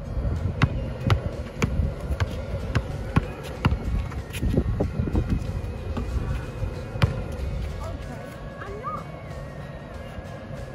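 Basketball bouncing on an outdoor asphalt court, a run of dribbles about every half second that thin out after about seven seconds, with background music and some voices.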